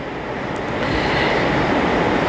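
A steady rushing noise, slowly growing louder.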